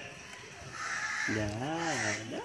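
A low-pitched voice calls out a drawn-out "hu" about a second and a half in, its pitch rising and then falling, after a short hiss.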